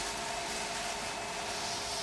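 Servo motors of a small biped robot whirring steadily with a faint hum as the robot shifts its weight while climbing wooden steps; the whirr swells briefly near the end.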